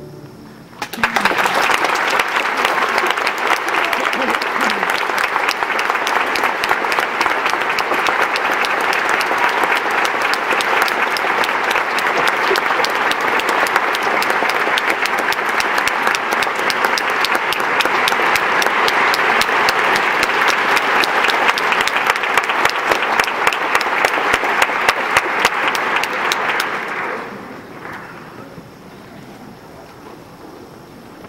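Theatre audience applauding: dense clapping starts about a second in, holds steady for some twenty-five seconds, then dies away near the end.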